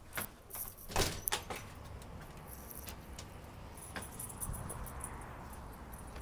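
A door latch and door being worked open: a few sharp metal clicks and rattles in the first second and a half, then a steady outdoor background noise.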